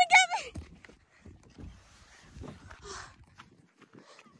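A child's high-pitched shriek cuts off within the first half second. Then come soft, irregular footsteps on wood-chip mulch.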